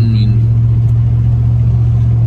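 Steady low drone of engine and road noise inside a moving Chevrolet pickup's cab.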